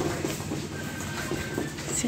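Steady low rumbling noise with faint irregular clicks, from footsteps and a handheld camera jostled while walking.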